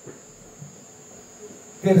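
A steady high-pitched drone of crickets in the background, with a few faint low sounds. A man starts speaking right at the end.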